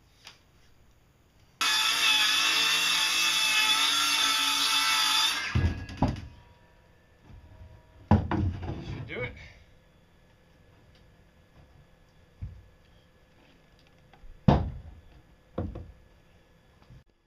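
Cordless circular saw cutting through plywood: a loud, steady whine that starts suddenly and runs for about four seconds before it stops. Afterwards come several heavy thumps and knocks of wood being handled, the last two near the end.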